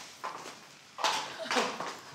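Footsteps on a tiled floor in a bare room: a few separate steps, the clearest two about a second in and half a second later, each trailing off briefly.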